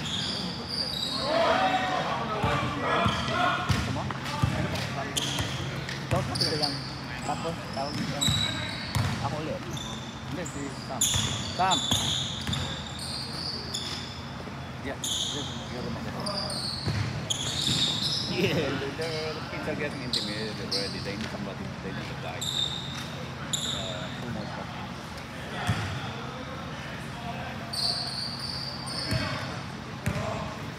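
Indistinct voices echoing in a large gym, with a basketball bouncing now and then on the hardwood court and occasional short high squeaks like sneakers on the floor, over a steady low hum.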